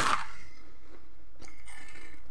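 Light rubbing and scraping of objects being handled, with a small click about one and a half seconds in.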